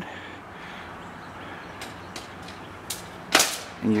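Senco pneumatic nailer firing: a few sharp separate pops spaced roughly half a second to a second apart in the second half, the loudest a little over three seconds in.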